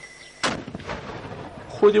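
A mortar firing a single round: one sharp report about half a second in, followed by a fading echo.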